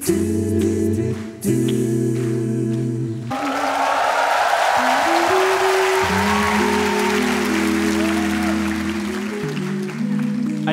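A man sings into a microphone over sustained held chords, and the vocal ends about three seconds in. An audience then applauds over the still-held chords for about six seconds, and the applause fades out near the end.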